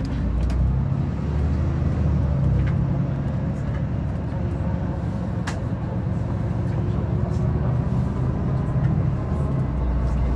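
Bus engine and road noise heard from inside the moving bus, the engine note shifting up and down several times, with a sharp click about halfway through.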